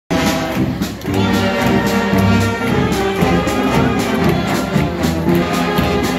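Street marching band playing a tune: tubas, euphoniums and saxophones holding sustained notes over a regular beat of bass drum and snare drum.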